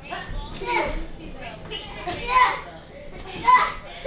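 Children shouting and yelling in rough play, in short wordless bursts, the loudest yells about two and a half and three and a half seconds in.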